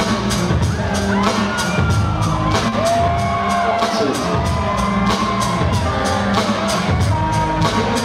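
Live hip-hop music from a DJ set with a band, played loud over a theatre PA: a quick steady beat over heavy bass, with gliding melodic lines on top.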